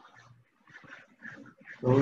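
Mostly quiet, with faint voice sounds and a brief low hum early on. A man begins speaking near the end.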